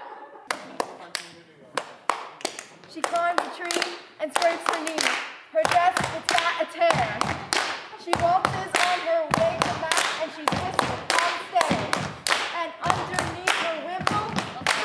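A group of people clapping their hands in quick, uneven claps, with voices calling out among the claps.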